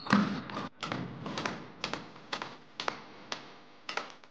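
Badminton racket strings striking a shuttlecock: a series of sharp cracks about every half second that grow fainter toward the end, with shoe and foot sounds on the court floor in the first second.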